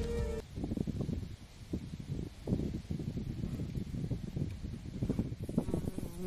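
Music cuts off about half a second in, followed by an uneven low rumble and rustle of wind buffeting the microphone outdoors.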